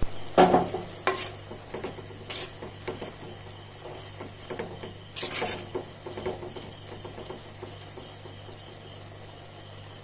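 Wooden spatula stirring steamed cut green beans in a clay pot, with scattered scrapes and knocks against the pot, the strongest in the first second and around five seconds in. A steady low hum runs underneath.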